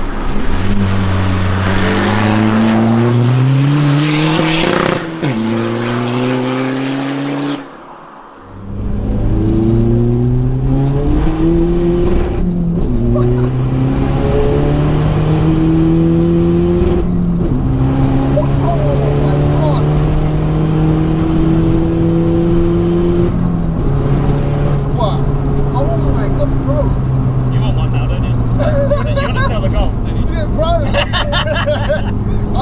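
Tuned VW Golf Mk4 1.9 TDI diesel engine accelerating hard through the gears. Its note climbs in each gear and drops back at every shift. At first it is heard from the roadside as the car approaches; after a cut it is heard from inside the cabin, pulling through several more gears.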